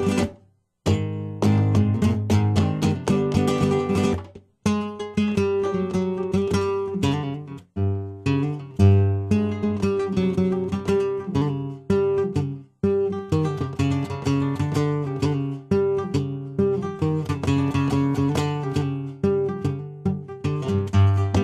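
Flamenco acoustic guitar played live, with strummed chords and plucked melody notes. The playing stops abruptly for a moment a few times: once just after the start and again several times later.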